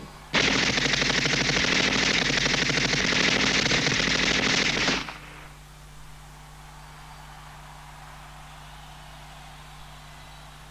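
Staged machine-gun fire, a rapid unbroken run of shots that starts suddenly about half a second in and cuts off abruptly about five seconds in. After it only a low steady hum remains.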